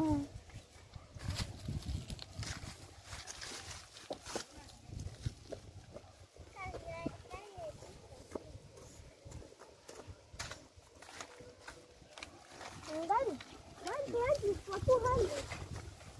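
Low, indistinct voices of people talking, loudest near the end, with scattered clicks and rustles of handling.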